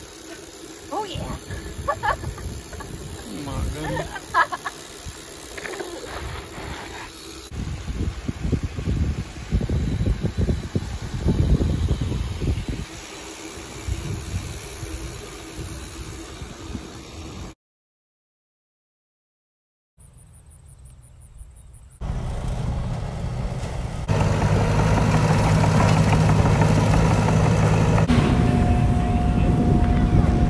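Wind buffeting the microphone while riding a bicycle on pavement, with a few brief voices. After a short dropout to silence, a loud steady engine drone with a hum fills the last several seconds.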